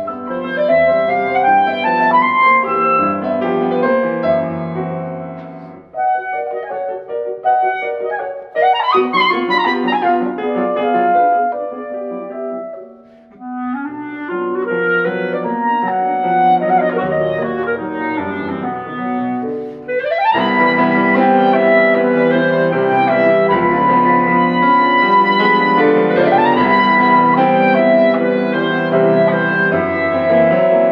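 Clarinet and grand piano playing classical chamber music, the clarinet leading with fast rising runs about nine, twenty and twenty-six seconds in. The music briefly drops quieter around thirteen seconds in.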